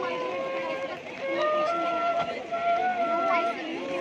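Bansuri (side-blown bamboo flute) playing a slow devotional melody through a microphone, with long held notes that step up and down between pitches.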